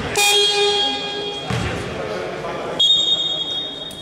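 A court buzzer-horn sounds for about a second and a half, a steady electronic tone, signalling a substitution. About three seconds in, a referee's whistle blows one long, shrill blast.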